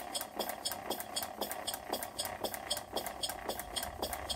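Scale-model Corliss steam engine running slowly, clicking steadily about twice a second over a faster, lighter ticking.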